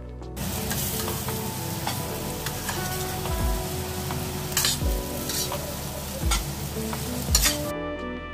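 Mutton pieces sizzling as they fry in a pan, stirred with a metal spatula that clicks and scrapes against the meat and pan. The sizzling starts about half a second in and cuts off suddenly just before the end, with background music underneath.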